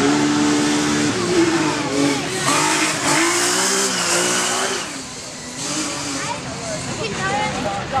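Audi TT rally car's engine revving hard past, its pitch stepping up and down through gear changes, then fading about five seconds in as the car pulls away. Spectators' voices come in near the end.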